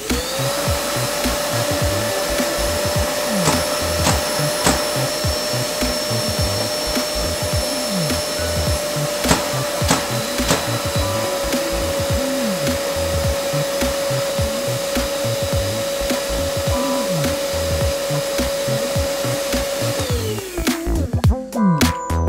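Bosch GAS 35 M AFC wet/dry dust extractor's suction turbine switching on and spinning up to a steady whine. Its pitch drops slightly about halfway, as the suction-power dial is turned. Near the end it is switched off and winds down.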